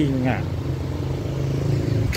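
A motor vehicle's engine running close by on the street, a steady low note with no change in pitch.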